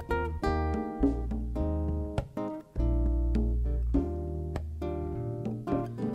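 Live instrumental interlude: an acoustic guitar playing a line of plucked notes over an electric bass guitar holding deep low notes.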